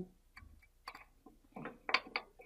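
Faint, scattered metallic clicks of a hex key being fitted into a socket-head screw on an aluminum press toolhead, with a louder cluster of clicks near the end as the key seats in the screw.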